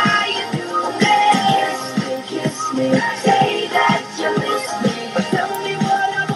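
Pop song playing, with a steady beat under a pitched melody line.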